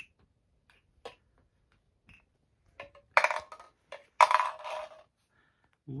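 A small glass jar handled by a toddler: a few faint clicks, then two louder clinks and rattles about three and four seconds in, as snack puffs knock against the glass.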